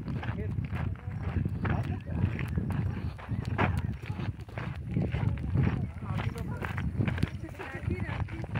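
Footsteps of people walking on a dirt path, irregular and uneven, over a heavy low rumble and indistinct voices.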